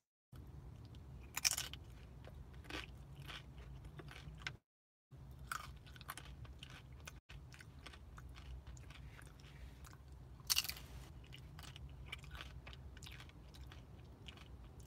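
Crisp tortilla chip with salsa bitten and chewed close to the microphone: a series of crunches, the loudest about a second and a half in and again near ten seconds.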